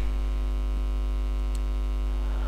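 Steady low hum with a stack of evenly spaced overtones, unchanging throughout.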